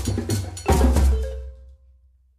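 Drum-and-bell percussion music for dance, with heavy bass drumming, ending on a last stroke about two-thirds of a second in that rings out and fades away.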